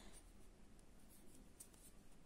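Near silence, with a faint scratchy rustle of sewing thread being drawn through the edge of a satin ribbon in needle lace work.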